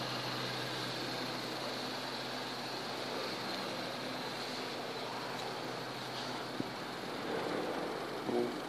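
A steady low mechanical hum over an even hiss of outdoor background noise, with one small click about six and a half seconds in.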